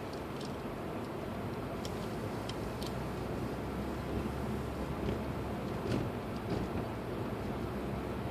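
A car driving slowly, heard from inside the cabin: a steady low engine and tyre rumble with a few faint clicks.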